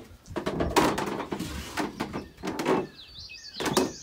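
Knocks and rustling of handling, then from about three seconds in a small bird giving a string of short, high chirps, the nesting mother bird calling as her nest in a hanging flower basket is approached.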